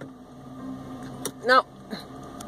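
A single sharp click a little past a second in, as of a car's interior light switch being pressed, over a steady low hum.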